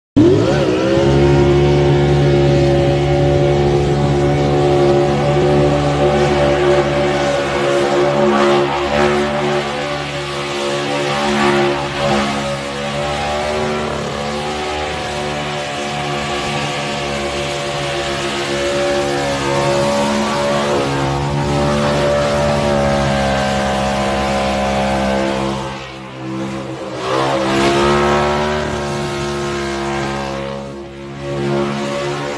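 Supercharged 302 V8 in a Ford Mustang revving up sharply and then held at high revs through a burnout, with tyre noise throughout. The engine note stays fairly steady, drops briefly about 26 seconds in, then climbs back up.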